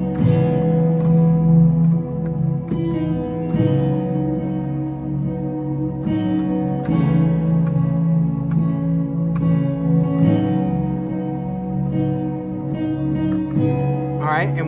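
Synthesizer keyboard playing a slow minor-key chord progression with sustained notes: the sixth held in the bass under right-hand chords that change about every three and a half seconds, going one chord, five over six, four over six, then back to five over six.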